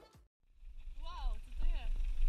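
Music cuts off, then after a brief gap there is the low rumble of an off-road vehicle heard from inside the cabin, with two short rising-and-falling voice calls about a second in.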